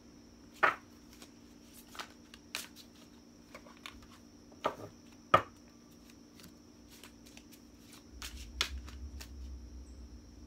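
A deck of tarot cards being handled and shuffled by hand: a few separate sharp clicks and taps of the cards at first, the loudest a little past the middle, then from about eight seconds in a continuous run of rapid card shuffling.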